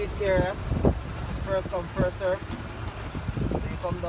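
Wind buffeting the microphone as a low, uneven rumble, with short stretches of people's voices over it.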